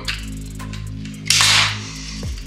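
Metabo HPT pneumatic metal connector nailer firing once, about a second and a half in: a single sharp, short burst as it drives a hanger nail through the steel hanger into the wood. Steady background music runs under it.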